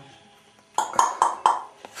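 A plastic cup knocking in a bathtub: four quick, sharp knocks, each with a short ring, about a second in.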